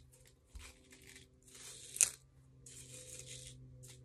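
Plastic fidget toy being handled and squeezed: several short crinkly rustles, with one sharp click about two seconds in.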